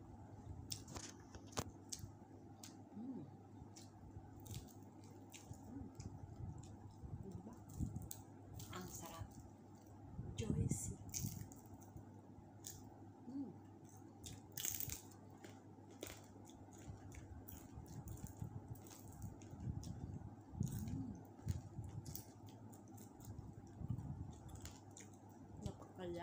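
Fingers tearing apart a whole roasted chicken, its crispy skin giving small scattered crackles and snaps as meat is pulled off, with soft mouth and eating noises between.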